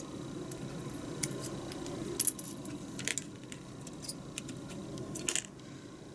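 Clear plastic model-kit runner rattling in the hands, with several sharp clicks of side cutters snipping parts off it, the loudest about two, three and five seconds in.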